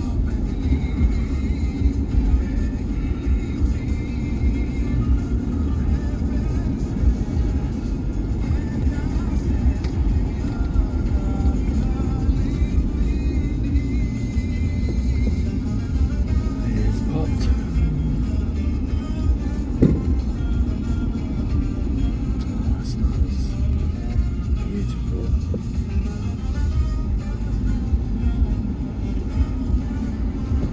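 Steady low road and engine rumble inside a moving car's cabin, with music playing over it.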